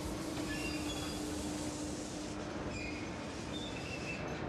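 Steady low hum over an even rumbling background noise, with a few faint short high tones; the hum fades near the end.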